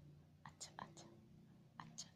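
Near silence with faint whispering and a few short, soft clicks.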